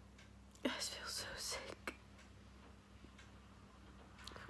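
A woman crying: one breathy, whispery sob starting about half a second in and lasting just over a second.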